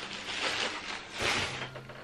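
Rustling and crinkling of a mail parcel's packaging being opened by hand, louder about a second in.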